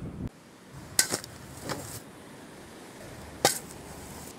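Cannon-fire sound effect: a sharp crack about a second in with two weaker ones following, then another sharp crack at about three and a half seconds.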